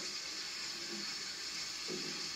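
Faint, steady hiss of a kitchen tap running into a sink during dishwashing, heard through a TV's speaker.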